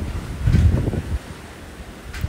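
Wind gusting across the microphone: a low rumbling buffet from about half a second to just over a second in, then easing to a lighter hiss.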